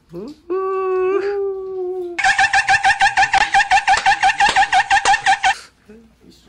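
A person's voice holds one long, steady note for about a second and a half, then breaks into a rapid, high-pitched, cackling laugh of about seven pulses a second that stops suddenly after about three seconds.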